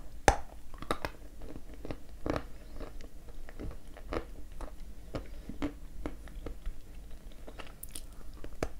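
A bite into a dry, pale piece of 'Ryzhik' edible clay with a sharp crack about a third of a second in, followed by irregular crunching as the dry clay is chewed.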